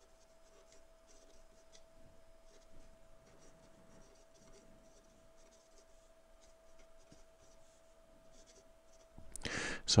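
Pen writing on paper: a faint, irregular scratching of short strokes, over a faint steady hum.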